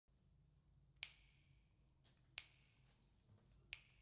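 Three crisp finger snaps, evenly spaced about a second and a half apart, counting in the tempo before an acoustic song begins.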